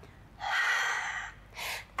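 A woman breathing hard from exertion as she presses up out of a diamond push-up: a long breath out through the mouth lasting about a second, then a short quick breath in near the end.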